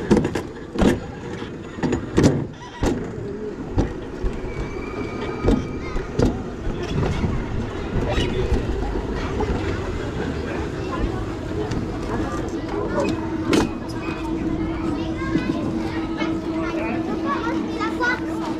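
Wiegand summer bobsled rolling in its stainless-steel trough, a steady rumble with several sharp knocks in the first three seconds, slowing as it comes into the end station. Voices of people and a child come in over it, and a steady low hum sets in during the last six seconds.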